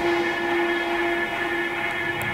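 Background music at a quiet break: a sustained chord of steady held tones with the bass and beat dropped out.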